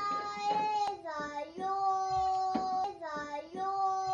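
Munchkin cat yowling in a standoff with another cat: long, drawn-out warning wails, each held about a second with a sliding start, three in a row.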